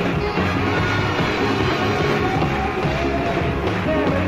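The Rolling Stones playing live rock music in 1972, heard on a soundboard recording with the highs cut off.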